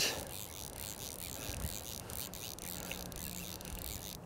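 Steady, fairly faint hiss of flowing river water, with no other distinct event.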